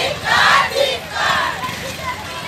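A crowd of women marchers shouting a slogan together, in two loud shouted lines about a second apart.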